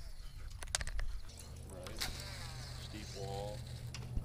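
A steady low engine drone sets in about a second in and holds. Those on the water take it first for a boat and then for a plane. A few sharp clicks and a brief murmur of voices come over it.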